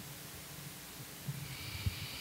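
A quiet pause with low room hum. In the second half a soft breath is drawn close to the lectern microphone, with a small low thump just before the end.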